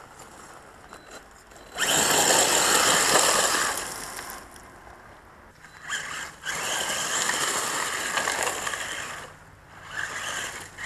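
Battery-powered radio-controlled buggy driving over loose gravel: motor whine and tyres crunching. There are two runs, the first starting about two seconds in and lasting about a second and a half, the second from about six seconds to just after nine.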